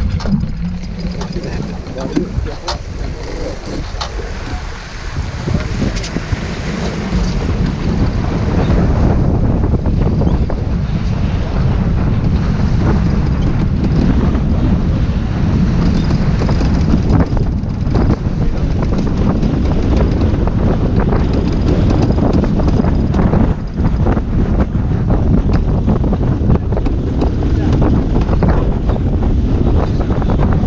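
Wind buffeting the microphone over rushing water along the hull of a sailboat heeled and driving through waves, with scattered clicks and knocks from deck gear; the rush grows louder and steadier after the first several seconds.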